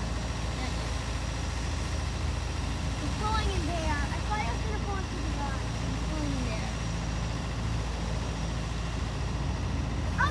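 Steady low rumble of an idling vehicle engine, with faint voices talking in the background around the middle.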